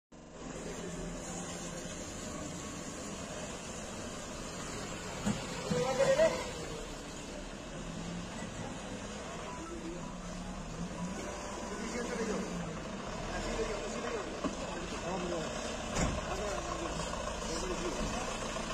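Vehicles driving past on a street, engines running, with indistinct voices in the background. A brief loud burst comes about six seconds in, and a sharp knock near the end.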